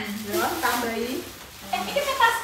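Plastic bags rustling and crinkling, with women's voices talking over them.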